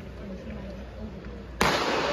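Starter's gun fired once near the end, a single sharp crack in a stadium that starts the 800 m race, followed by louder crowd noise. Before it, a low murmur of waiting spectators.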